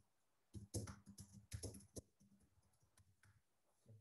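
Computer keyboard being typed on: a quick, faint run of key clicks that stops about halfway through.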